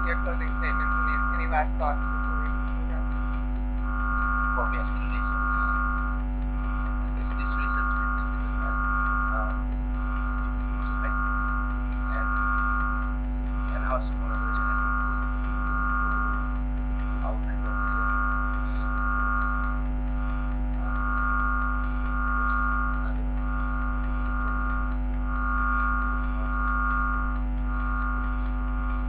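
A steady electrical hum and drone made of several held tones, with a higher tone pulsing on and off every second or two. Faint voices are heard in the first couple of seconds.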